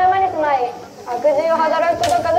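High-pitched children's voices chanting a kagura song in drawn-out, wavering notes.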